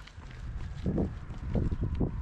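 Wind rumbling on the microphone, with a few soft thumps about a second in and again shortly after.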